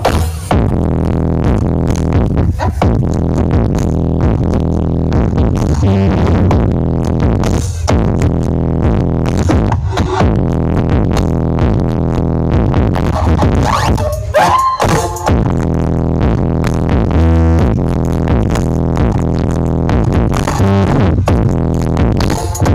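Loud electronic dance music with a heavy, steady bass beat and a few short breaks, played through the Brewok Audio sound system's large speaker stack.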